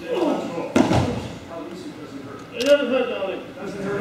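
A sharp slap on a padded mat about a second in, typical of a pinned aikido partner striking the mat, with a smaller knock near the third second. Low voices can be heard around them.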